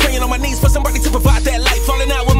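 Hip hop music: a beat with deep 808 bass, a kick about every two-thirds of a second and fast hi-hats, with rapping over it.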